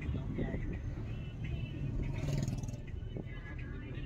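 Inside a moving car: steady low road and engine rumble of the taxi, with voices over it.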